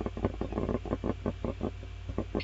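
Computer mouse scroll wheel ticking rapidly, about eight clicks a second, over a steady low electrical hum.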